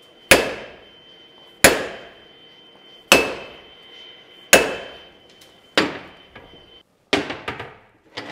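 Heavy hammer striking a seized steel bottle jack clamped in a vise. Five hard blows land about a second and a half apart, each ringing out, shock blows meant to break rust and corrosion loose. A shorter clatter follows near the end.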